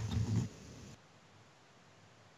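A short, low murmur in a boy's voice, heard over a video call, fading within about half a second; about a second in, the call audio drops to dead silence as the call's noise suppression gates it out.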